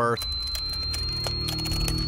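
A thin high whine rising slowly in pitch, the flash of the old Polaroid camera charging up, over a low, steady film-score drone, with a few faint clanks of the camera being handled.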